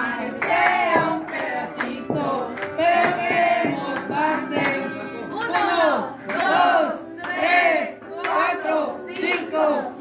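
A group of party guests, many of them children, singing together loudly in short rhythmic phrases about once a second.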